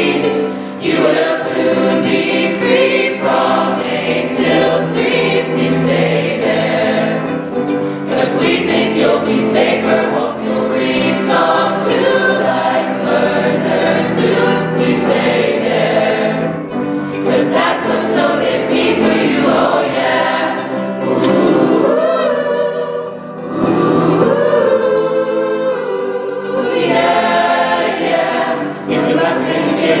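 Mixed-voice high school choir singing a song, with piano accompaniment.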